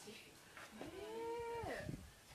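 A single drawn-out, meow-like animal call lasting about a second: it rises, holds steady, then drops off at the end.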